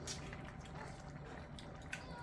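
Faint bubbling of spicy fish stew simmering in a pot on a tabletop burner, with a low steady hum and a few small clicks.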